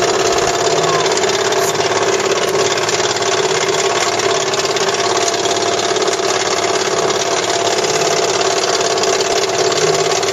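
A steel roller coaster's chain lift hauling the train up the lift hill: a steady mechanical running with a constant hum that holds at one level throughout.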